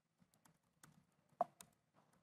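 Faint typing on a computer keyboard: a handful of separate keystrokes, the loudest about a second and a half in.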